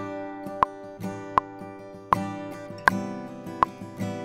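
Acoustic guitar strummed in six sharp, evenly spaced strokes, about one every three-quarters of a second, each chord left ringing between strokes.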